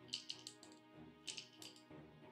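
Quiet background music, with two short runs of light clicks from wooden puzzle-box pieces being handled, the first near the start and the second about a second later.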